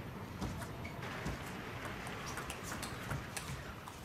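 Indoor arena ambience between table tennis points: a steady hum of crowd and hall noise with scattered faint clicks.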